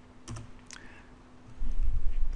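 Keystrokes on a computer keyboard: a few sharp key clicks as a terminal command is entered, followed near the end by a louder low rumble.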